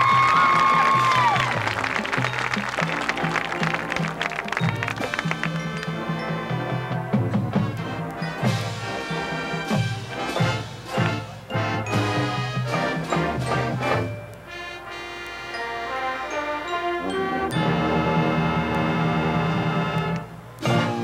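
High school marching band playing live: brass over drums, opening on a loud high brass note that bends in pitch. The music softens about two-thirds of the way through, then the full band comes back in louder near the end.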